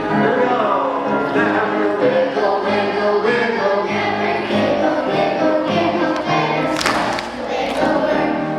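Children's choir singing a song together, with one sharp hit cutting through about seven seconds in.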